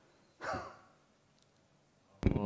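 A man's short sigh about half a second in: a breath out with a little voice in it.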